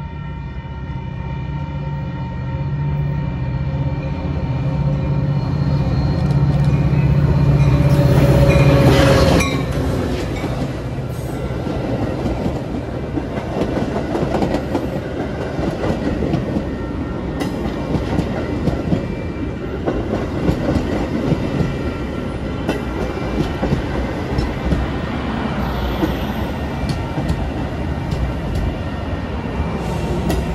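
Metra commuter train passing. The diesel locomotive's engine drone grows louder as it approaches, peaks and falls away sharply about nine seconds in, then the bilevel coaches roll by with steady wheel clatter over the rail.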